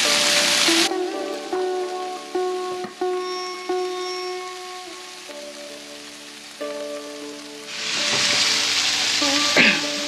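Vegetables sizzling as they fry in oil in a skillet for about the first second, then background music of held notes changing pitch every second or so for about seven seconds. The frying sizzle comes back near the end.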